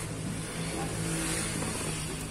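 Engine noise of a passing motor vehicle, swelling about a second in and then easing, over a steady low hum.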